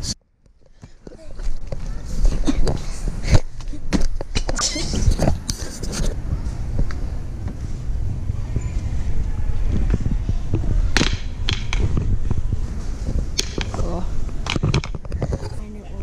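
Handling noise of a handheld camera being carried along a shop aisle: a steady low rumble and rustle with scattered clicks and knocks, after about a second of near silence at the start.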